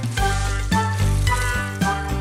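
Children's song music with a steady bass line, and over it a cartoon water-splashing sound effect.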